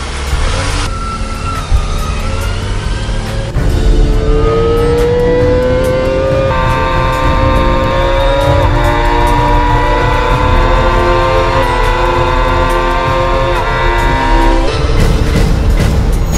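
Kawasaki ZX-25R's 250 cc inline-four engine revving very high, its high-pitched note climbing slowly as the bike accelerates, with brief breaks in the pitch about halfway through and near the end.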